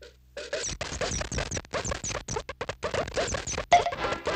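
Cartoon sound effects of a barrage of slingshot pellets: quick whizzing and pinging hits, about six a second. A louder hit comes near the end, as music starts.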